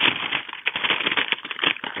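Sheets of paper being shuffled by hand: a dense, continuous run of rustling and crackling.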